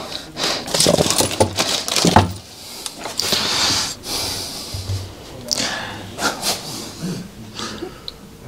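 Workbench handling noises: scattered light clicks and knocks of metal engine parts against the crankcase and bench, with a short hiss about three seconds in.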